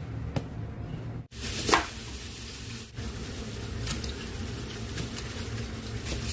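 Kitchen cooking sounds: a few sharp knocks from a knife and utensils, the loudest about two seconds in, over a steady low hum and hiss as vegetables are cut and stir-fried in a wok.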